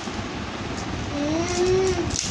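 A steady rushing noise, with a child's voice holding a hummed note that rises slightly in the second half.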